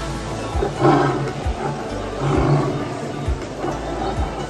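Recorded big-cat growls played for an animatronic leopard, two rough growls, about a second in and again just past halfway. Background music with a steady low beat runs underneath.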